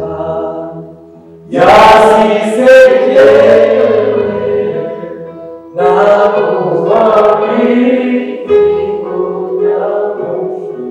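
Several voices singing a gospel song together, in loud phrases that start about one and a half seconds in and again near six seconds, with long held notes.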